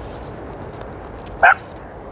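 A dog gives a single short, sharp bark about one and a half seconds in.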